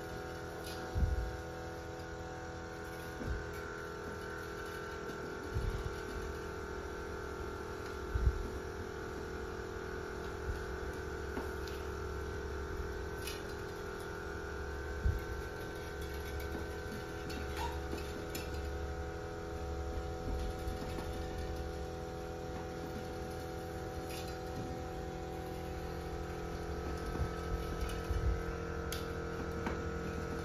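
Steady hum of several even tones, with scattered light clicks and a few low knocks from handling a wire bird cage and fitting its fiber spokes; the loudest knocks come about a second in and about eight seconds in.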